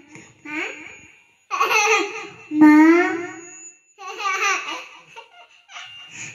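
A toddler babbling and laughing into a microphone in four short sing-song bursts, the pitch sliding down in the longest one.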